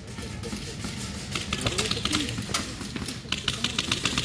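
Airsoft guns firing in rapid bursts, a fast run of sharp clicks about a dozen a second, starting about one and a half seconds in and again near the end.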